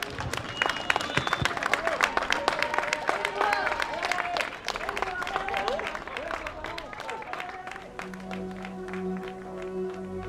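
Roadside spectators clapping and cheering, with shouting voices. Steady music fades in near the end.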